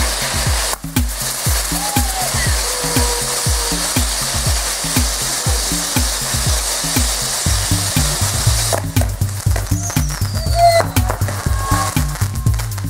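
Music with a steady beat over a continuous hiss from ground fountain fireworks spraying sparks.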